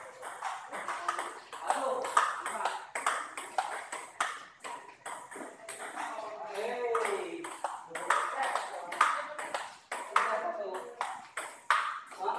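Table tennis balls clicking off paddles and tables in quick, irregular succession from several tables at once, with people talking in the background.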